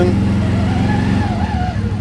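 CFMoto CForce 1000 ATV's V-twin engine running at low revs while the machine creeps in reverse: a steady low hum with a faint, wavering higher whine, easing slightly after about a second.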